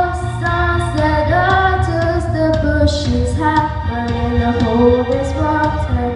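A boy singing a song solo into a microphone, amplified through the hall's PA, in held notes that step up and down in pitch.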